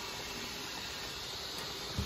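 Sausage drippings sizzling gently in a frying pan on the stove, a steady, even hiss.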